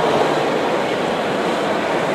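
Steady background noise of a large exhibition hall during a pause in the talk: an even, continuous hiss and rumble with no distinct events.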